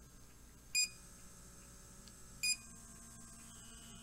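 Handheld electric blackhead vacuum (pore suction device) running with a faint steady motor hum. It gives two short electronic beeps, about a second and about two and a half seconds in, as its button is pressed. After the second beep the hum changes, as the device steps to another speed.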